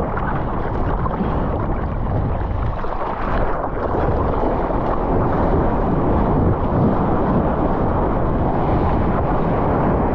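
Ocean water rushing and splashing around a surfboard close to the microphone, with wind buffeting the mic, a steady loud roar. Near the end the board is in whitewater foam.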